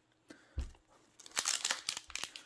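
Foil Yu-Gi-Oh! booster pack being torn open by hand: a quick run of crinkling, tearing crackles that starts about a second in.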